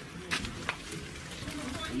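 Faint voices of people talking in the background, with two short sharp knocks about a third and two-thirds of a second in.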